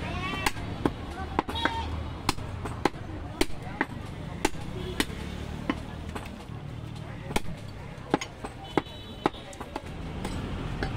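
Butcher's cleaver chopping a goat leg: sharp, irregular blows, about one to two a second, over a low rumble of street traffic and some voices.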